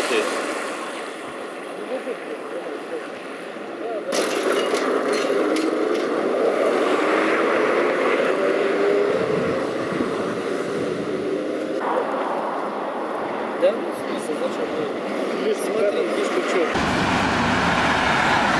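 Cars passing along a street: engine and tyre noise, with one engine note rising in pitch about six to nine seconds in. The traffic sound changes abruptly a few times.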